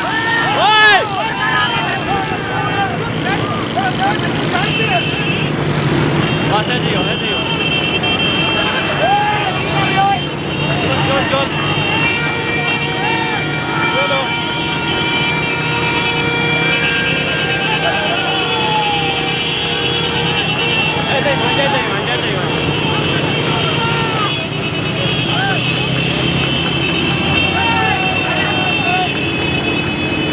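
Motorcycle and car engines running alongside, with men shouting and calling out over them. Vehicle horns sound in long held blasts, more steadily in the second half.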